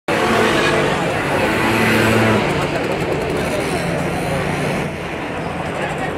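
A car engine running with a steady low hum, amid people talking in the street.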